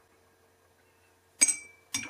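A paintbrush clinks once against a glass water jar about a second and a half in, with a short bright ring, and taps it again near the end.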